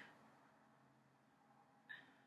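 Near silence: room tone, with one faint tick near the end.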